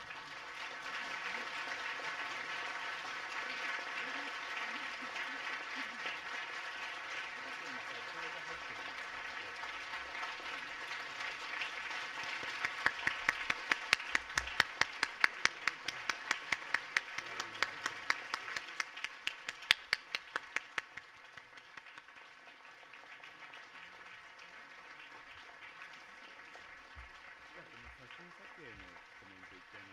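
Audience applause, a dense steady clapping, with a run of sharp single claps close by standing out over it for several seconds before it dies down about two-thirds of the way through.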